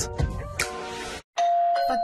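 Music from a TV sponsorship bumper that stops about a second in. After a brief gap, a new jingle begins on a long held tone.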